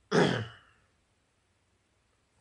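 A man clears his throat once, briefly, just after the start.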